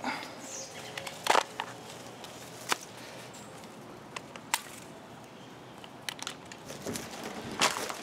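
Handling noise from a battery mini pruning chainsaw, switched off, as it is taken apart: a few sharp clicks a second or so apart, with light rustling.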